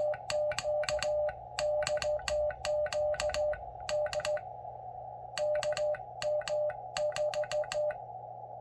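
Hand-sent Morse code on an MFJ-553 brass straight key: the Xiegu X6100's steady mid-pitched CW sidetone keyed on and off in dots and dashes, with a sharp click at each press and release. There is a pause of about a second near the middle. The sending is uneven, the clumsy keying of a paddle operator on a straight key whose travel has just been shortened.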